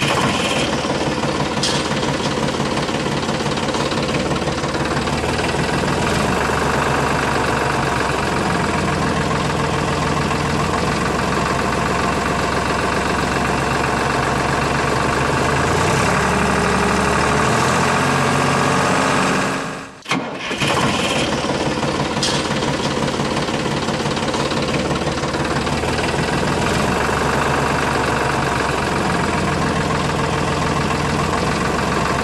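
Tractor engine running steadily at an even pace. It cuts out abruptly for a moment about twenty seconds in, then carries on as before.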